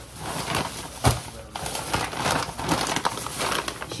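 Plastic grocery bags and food packaging rustling and crinkling as groceries are unpacked, with a thump about a second in.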